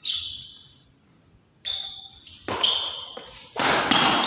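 Badminton doubles rally: sharp knocks of rackets hitting the shuttlecock and short high squeaks of shoes on the court floor, echoing in a large hall, with the loudest hit a little before the end.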